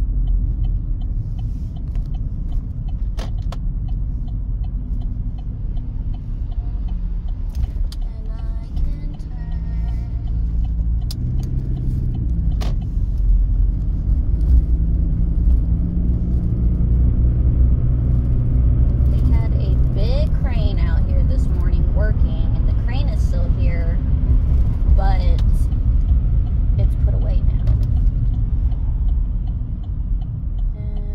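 Car cabin noise while driving: a steady low rumble of engine and tyres, growing louder about halfway through. A voice or music comes in faintly at times over the rumble.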